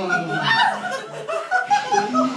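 Laughter: short bursts of chuckling.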